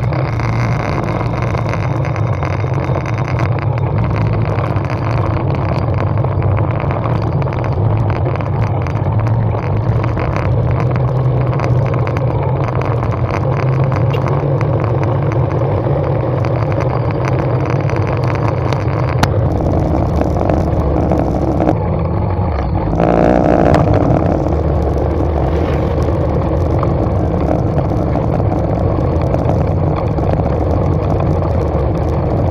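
A small motorcycle engine running steadily while being ridden, with wind rushing over the microphone. The engine gets briefly louder about two-thirds of the way through.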